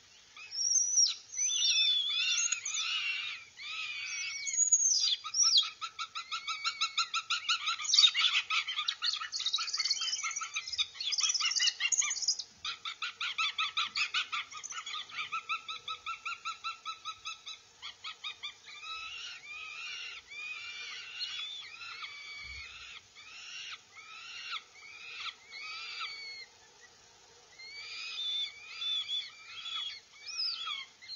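Northern goshawk nestlings begging loudly for food as an adult arrives at the nest. The calls are arching and squealing, with a long run of fast repeated calls, about four a second, in the middle stretch, then sparser calls toward the end.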